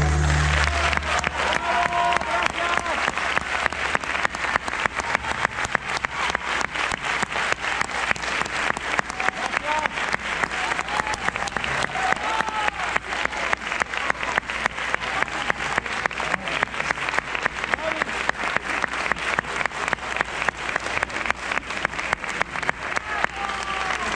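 A concert audience applauding with a few voices calling out. The orchestra's last held chord dies away about a second in.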